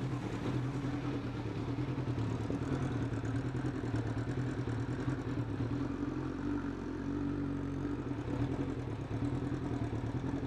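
Motorcycle engine running steadily at low road speed with an even, unbroken hum.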